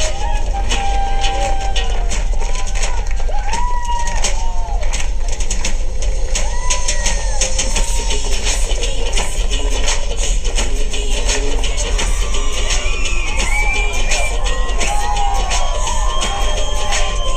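Bollywood film song with singing over a fast drum beat, played on a laptop, with a steady low hum underneath.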